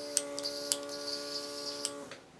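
Small airbrush makeup compressor running with a steady hum and a high hiss, then switching off about two seconds in. A few light ticks sound over it.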